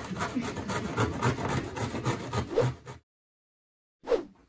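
Horseradish root being grated on a stainless steel box grater: quick, repeated rasping strokes of root against the metal teeth. The sound cuts off abruptly about three seconds in.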